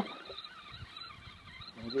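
Low-level outdoor ambience with light, uneven wind rumble on the microphone, between stretches of speech; no distinct event stands out.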